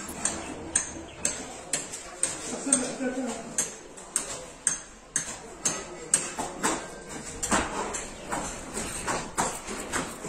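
Footsteps crunching on a gritty, dusty concrete slab, about two steps a second. A man's voice says "there we go" about three seconds in.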